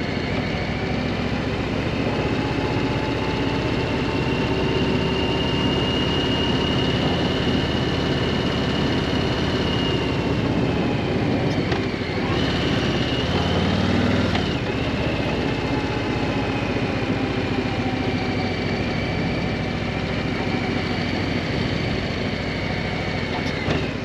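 2021 Harley-Davidson Street Bob 114's Milwaukee-Eight 114 V-twin engine running steadily while the bike is ridden. Its note drops and picks up again twice, about halfway through.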